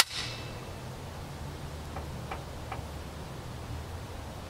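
A single sharp click at the very start, then low steady background hum with a few faint ticks about two to three seconds in, as a CZ Scorpion EVO 3 carbine is shouldered and aimed before the shot.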